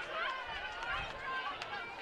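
Several distant voices shouting and calling over one another, high-pitched and overlapping, from spectators and players across a lacrosse field, with a single sharp click about one and a half seconds in.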